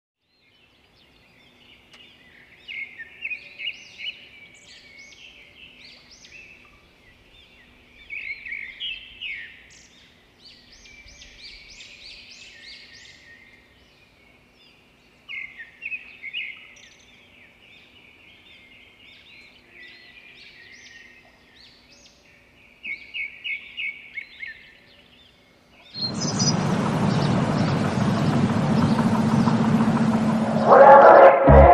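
Birds chirping and singing in clusters of short, repeated high phrases over a faint background. Near the end, a loud, steady rushing noise cuts in and takes over.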